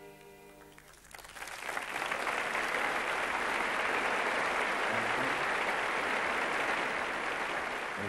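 A held string chord from the orchestra dies away, then a studio audience applauds, swelling in about a second in and clapping steadily from then on.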